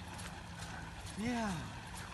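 A man's short, rising-and-falling "oh!" exclamation a little past halfway, over faint irregular clicks and a low steady hum.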